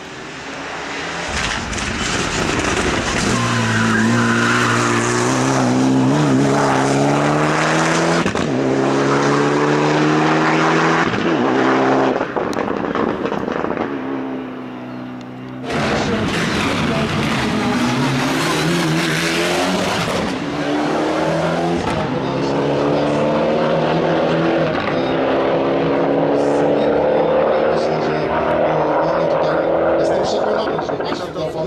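Mitsubishi Lancer Evolution X rally car's turbocharged four-cylinder engine at full throttle, revving up through the gears with the pitch climbing and dropping at each shift. The sound breaks off about halfway and picks up again as another pass.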